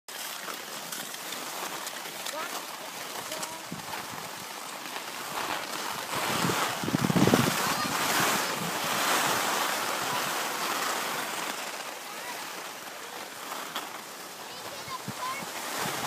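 Skis sliding over groomed snow, a steady hiss mixed with wind on the microphone, swelling louder about six seconds in and easing off after ten.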